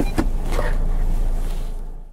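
Steady cabin hum inside a stationary SEAT Tarraco, fading out near the end.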